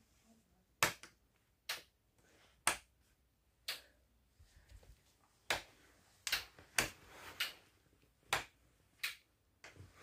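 A wall light switch clicking on and off repeatedly, about eleven sharp clicks at uneven intervals roughly a second apart.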